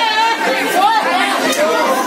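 A group of young men's voices talking over one another in lively chatter.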